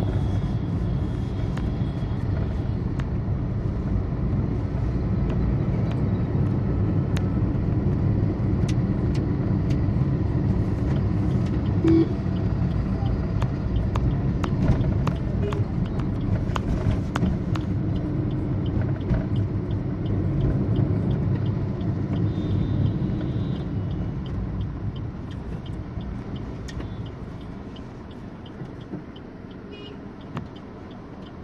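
Road noise inside a moving car's cabin: a steady low rumble of engine and tyres, growing quieter in the last few seconds.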